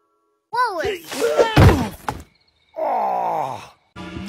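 Cartoon child character's voice giving short sliding cries, with a sharp thunk about a second and a half in, then one long falling groan, a mock death.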